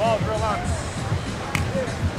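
A high-pitched voice calls out at the start. About one and a half seconds in, a volleyball is struck once with a sharp smack.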